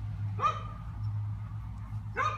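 A small child's brief high-pitched vocal sound about half a second in, rising and then held, over a steady low hum.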